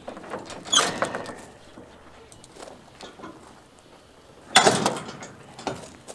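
Steel tie-down chain rattling and clinking as it is pulled through and tightened to chain a tractor onto a trailer, with two louder clatters, one about a second in and one near the end.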